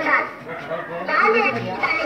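Speech: a child's voice talking, with other children's voices in the background.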